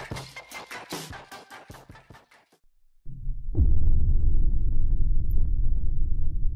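Music fading out over its last few ticking beats, a moment of silence, then a deep rumbling transition sound effect that opens with a quick falling sweep and runs on steadily.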